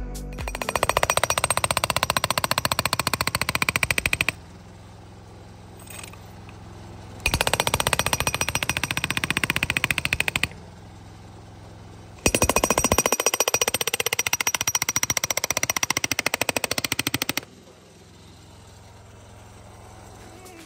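Handheld hydraulic breaker with a chisel point hammering concrete along the kerb edge, in three bursts of rapid blows a few seconds each, breaking out the kerb line. A steady low hum fills the pauses between bursts.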